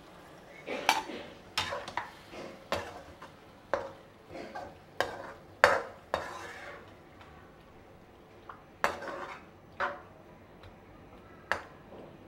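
A perforated metal spatula scraping and clanking against a metal wok while a wet sauce is stirred: about nine sharp, irregularly spaced strokes with a quieter pause two-thirds of the way through. This is the stirring-in of cornflour slurry to thicken the sauce.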